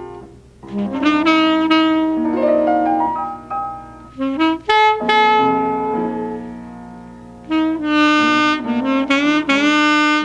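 Alto saxophone playing a melodic jazz line over piano accompaniment in a live duo. The phrases are broken by short pauses, and the saxophone comes back strongly near the end.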